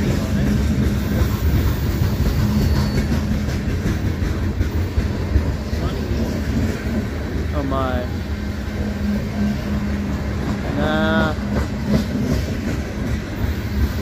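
Freight cars of a long manifest train rolling past close by: a steady, loud rumble of steel wheels on the rails with the clatter of the cars' trucks.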